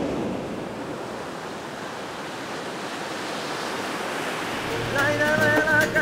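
Sea surf washing onto a sandy beach, a steady rush of waves with some wind. About five seconds in, music with guitar and a voice begins over it.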